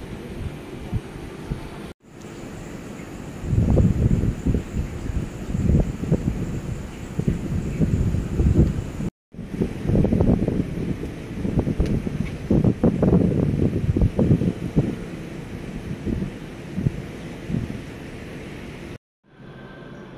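Wind buffeting the microphone in irregular gusts, a loud low rumble, cut off briefly three times as the shots change.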